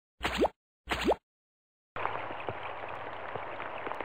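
Two quick cartoon plop sound effects, each a short rising tone, about half a second apart. About two seconds in a steady hiss begins, like a rain sound effect, and it cuts off suddenly at the end.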